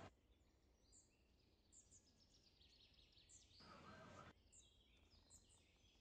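Near silence: faint room tone with a few faint, short, high chirps, and a brief soft swell of noise a little past the middle.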